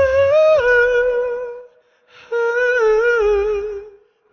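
A man singing a wordless, hummed melody with no accompaniment: a long held high note that breaks off about a second and a half in, then, after a short breath, a second wavering phrase.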